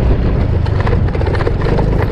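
Motorcycle riding along a dirt track, its engine and the ride making a steady, loud low rumble.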